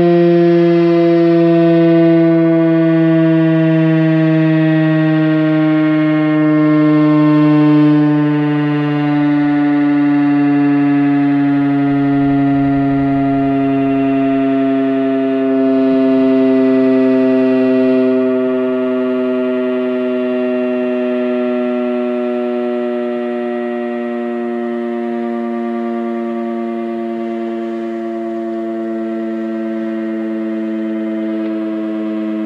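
Federal Signal Thunderbeam RSH-10A rotating outdoor warning siren sounding one continuous tone whose pitch slowly sinks, its loudness swelling slightly as the reflector turns.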